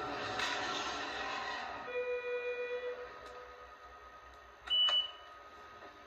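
Electronic pop music trailing off into a few sustained, fading tones, then a single short high-pitched beep about five seconds in.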